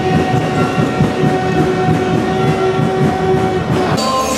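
Arena game horn sounding one long steady blast of nearly four seconds, the buzzer that ends a period of play, with a fast low rhythmic rumble beneath it.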